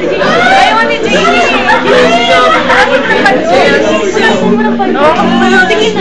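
A roomful of voices chattering and calling out loudly, many at once, over an acoustic guitar being strummed.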